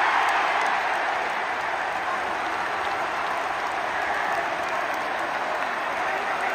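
Large stadium crowd cheering and applauding a penalty in a shootout. The noise eases off over the first couple of seconds and then holds steady as clapping and cheering.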